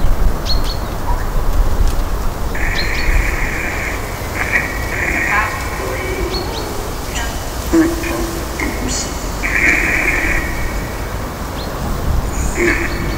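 Outdoor ambience: a steady low wind rumble on the microphone, with scattered short, high bird chirps and a few one-second bursts of hiss.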